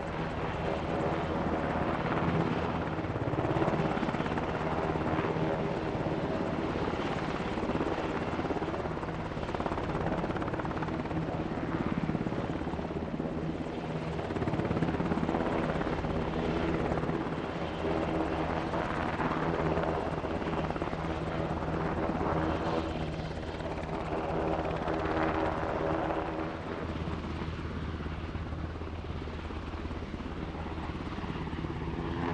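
UH-60 Black Hawk helicopter hovering low with a sling load, its rotor and twin turbines running steadily. The sound swells and eases every couple of seconds and grows a little quieter near the end as the helicopter lifts away with the load.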